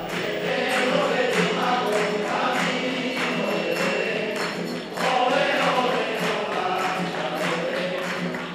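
A group of men singing together in chorus to strummed Spanish guitars. A steady beat of sharp percussive strikes, about two a second, runs under the singing.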